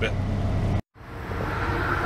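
Steady low hum of a parked semi-truck idling, heard inside the cab. It is cut off by a sudden dropout of under a second, then gives way to steady outdoor background noise.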